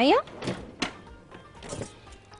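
Two short, sharp knocks about a third of a second apart from kitchen utensils being handled while a whisk is fetched.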